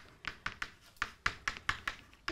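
Stick of chalk tapping against a blackboard while words are written, an uneven run of about a dozen light clicks.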